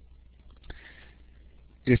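A man's short, soft intake of breath into the microphone, with a faint click just before it, in a quiet gap in speech; he starts speaking again near the end.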